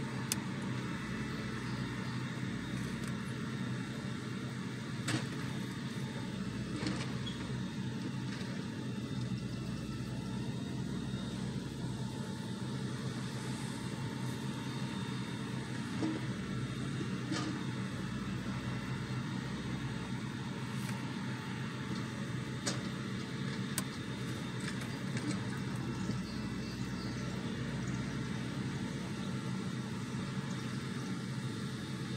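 Engine of a railroad-tie grapple loader running steadily with a low hum, with a few sharp knocks now and then.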